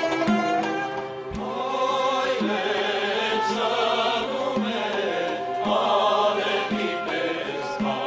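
A mixed choir of men and women singing a traditional Armenian song, holding long notes, over a frame drum struck about once a second.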